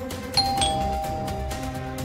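Two-tone doorbell chime, ding-dong: a higher note, then a lower one about a quarter second later, both ringing on for over a second over background music.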